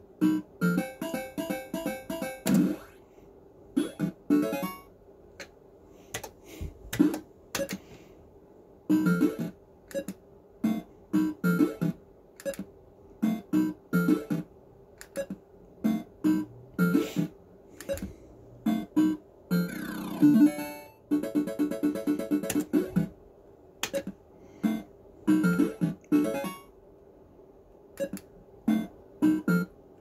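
Action Note fruit machine sounding its electronic bleeps and short jingles while the reels spin and stop, in repeated bursts of tones and clicks with short gaps between, and a quick sliding run of notes about two-thirds of the way in.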